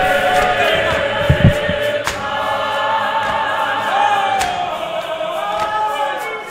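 Church choir of men and women singing a hymn together, unaccompanied, with a couple of low thuds about one and a half seconds in and a few sharp knocks.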